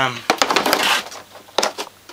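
A short spoken "um", then handling noise: a few light clicks, a brief rustle, and more clicks near the end as the camera and coiled wire are moved about.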